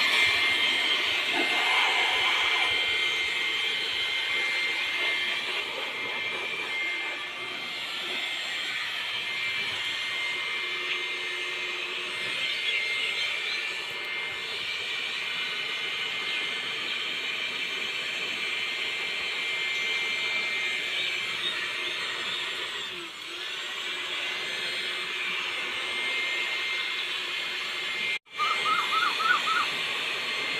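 Handheld electric air blower running steadily with a high-pitched motor whine, blowing dust off a tractor engine. The sound cuts out abruptly for a moment near the end.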